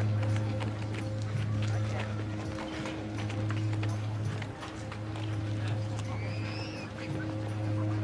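Film soundtrack of a busy market courtyard: a steady low musical drone under crowd murmur, with many hoof clops and knocks, and one short arching animal call about six seconds in.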